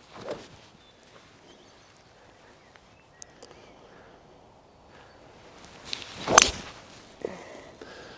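Golf fairway wood striking a ball off the turf: a faint strike about a quarter second in, then a much louder, crisp strike about six and a half seconds in, over quiet open-air background.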